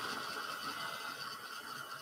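Handheld hair dryer blowing steadily: a rushing fan hiss with a faint motor whine.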